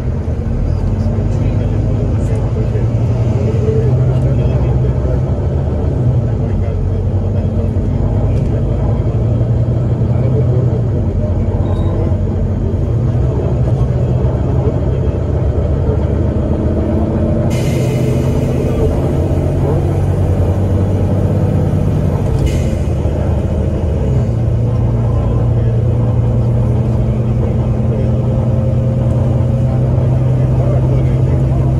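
Volvo B9TL bus's six-cylinder diesel engine and Voith automatic gearbox heard from inside the saloon, droning steadily as the bus drives along, the pitch slowly rising and falling with speed. A higher hiss joins for about five seconds in the middle.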